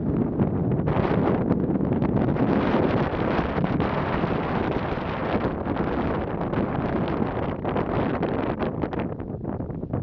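Wind blowing across the microphone: a steady, gusty rush that thins out slightly near the end.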